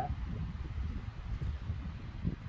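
Wind buffeting the microphone outdoors: an uneven low rumble with a faint hiss above it.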